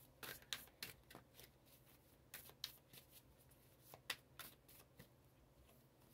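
A deck of reading cards being shuffled and handled: a run of soft, sharp card slaps and flicks in three short bursts.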